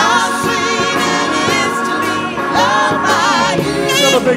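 Live soul band playing with voices singing over it, holding long wavering notes.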